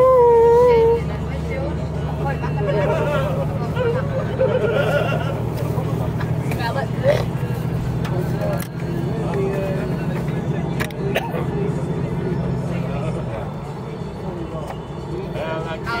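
Coach engine droning steadily inside the passenger cabin, easing off near the end, with passengers chattering in the background. A loud wavering pitched tone sounds in the first second.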